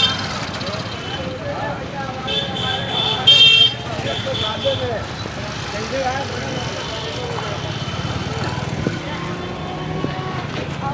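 Busy market street: crowd chatter and traffic noise, with high-pitched vehicle horns sounding between about two and five seconds in. The loudest is a short blast at about three and a half seconds.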